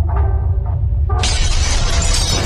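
Intro sound effect of breaking glass: a steady deep rumble with a few faint tones, then, just over a second in, a sudden loud shattering crash that carries on.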